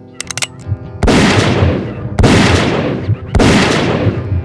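Three loud gunshots about a second apart, each followed by a long echoing tail, over background music.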